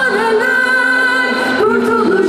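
Live singing in long held notes at a concert, the melody moving to a new note about one and a half seconds in.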